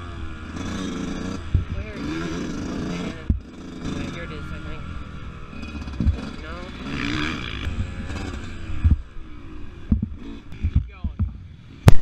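Dirt bike engine running at low revs, its pitch rising and falling a few times as the throttle is worked. Scattered knocks come through, more of them near the end.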